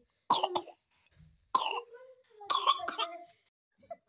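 A few short coughs, four sharp bursts spread over about three seconds.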